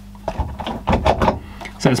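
A few short knocks and clicks of a hard plastic mains plug and its cord being pulled and handled on a workbench.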